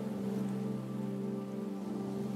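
Soft background meditation music in a pause of the narration: a sustained low drone of several held tones, with a faint steady hiss over it.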